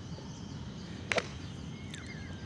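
A five-iron striking a golf ball: one sharp, crisp impact about a second in, over faint outdoor ambience.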